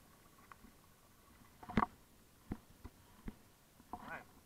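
A few sharp knocks and bumps of handling as a small largemouth bass is reeled in on a spincast rod and lifted out of the water; the loudest knock comes a little under two seconds in, with three lighter ones after it.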